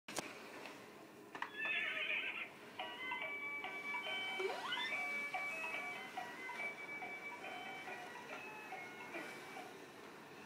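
Electronic sound unit of a child's ride-on toy horse: a short recorded horse whinny about a second and a half in, then a simple electronic tune of stepped beeping notes lasting several seconds.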